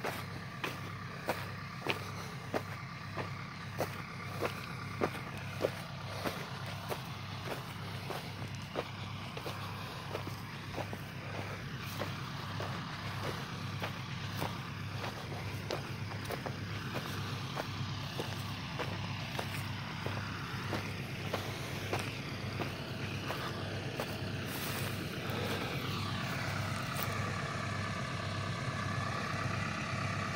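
Footsteps on dry, gravelly ground, one or two a second, over a steady low engine hum that runs throughout; the steps fade out after the first half.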